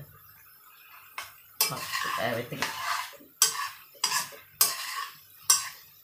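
A metal spoon scraping and clanking against a wok while stir-frying instant noodles with vegetables. Sharp strokes come roughly once a second from about a second and a half in.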